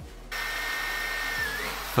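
Electric drill boring a small pilot hole through an MDF panel: a steady motor whine that starts about a third of a second in, sags a little in pitch near the end and stops just before the end.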